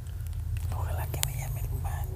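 Handling rumble on a handheld phone's microphone, with a few sharp clicks and a faint whispering voice.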